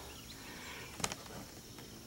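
Faint outdoor background with a brief sharp click about a second in.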